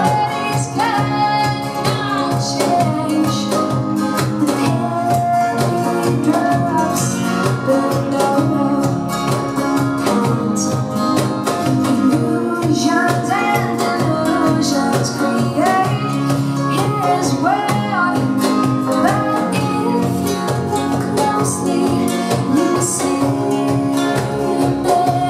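A live acoustic band plays a song: a woman sings over acoustic guitar, with a Roland Juno-Di keyboard, a cajon keeping a steady beat, and an electric guitar.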